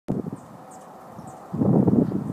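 Wind rumbling on the microphone, with a few faint, short, high chirps. A voice begins near the end.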